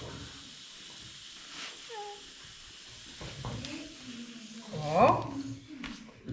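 Fine table salt poured from a paper bag into a glass: a soft, steady hiss of running grains. A brief rising voice about five seconds in is the loudest sound.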